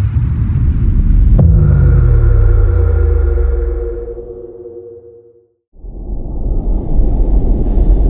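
Cinematic logo sound effect: a low rumble, then a deep impact hit about a second and a half in, with a falling low tone and ringing tones that fade out over about four seconds. After a brief silence, a new low rumble swells in near the end.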